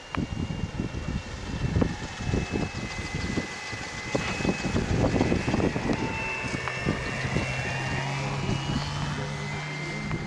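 Engine and propeller of a large radio-controlled model autogyro in flight, a steady whine whose pitch shifts as it flies past.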